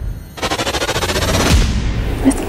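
A very fast, evenly spaced rattle of clicks lasting about a second, a machine-gun-like sound effect, ending in a low thud.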